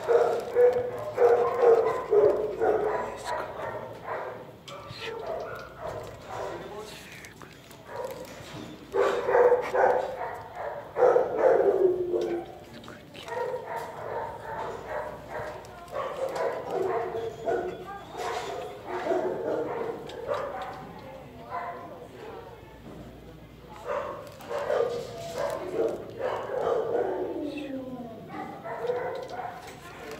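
Dog barking and whining in repeated bouts, some whines sliding down in pitch.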